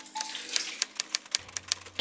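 An irregular run of sharp, dry clicks, several a second.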